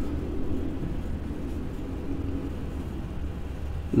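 Steady low rumble of background noise with a faint hum, even throughout and without distinct strokes.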